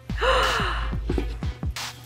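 A breathy gasp of surprise with a falling voice, lasting under a second, followed by a few light clicks, over background music.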